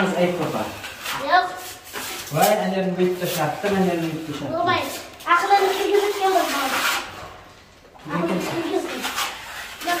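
Speech: people talking in a small room, with no other sound standing out.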